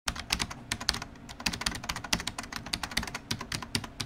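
Computer keyboard typing: a rapid, irregular run of key clicks, about ten a second, as text is typed out.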